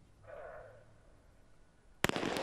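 Near-silent hush of a stadium crowd holding still before the start of a 100 m sprint, with one brief, faint call about a quarter of a second in.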